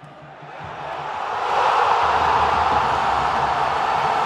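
Logo sting sound effect: a whoosh of noise that swells up over about a second and a half and then holds steady, with a faint low rumble beneath.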